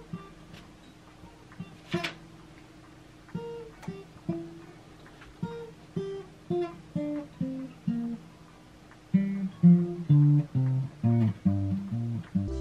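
Acoustic guitar played by hand, single notes picked one at a time in a slow, halting melodic line, like practice. There is a sharp click about two seconds in, and the notes come quicker and louder near the end.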